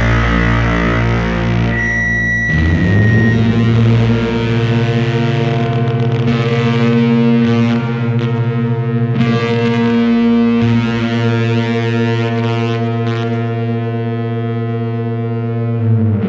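Heavy psychedelic rock with distorted electric guitar. About two and a half seconds in, the band drops into one long held chord that rings on steadily, with a brief high whine just before it.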